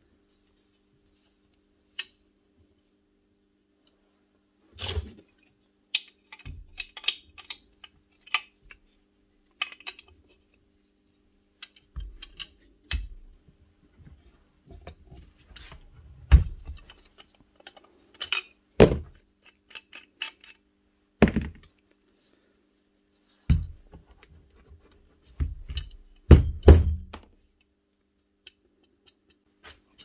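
Scattered clicks, clinks and knocks of metal parts being handled as an old Hitachi router is taken apart and its armature worked free of the aluminium housing. The knocks come sparsely at first, then more often and louder in the second half.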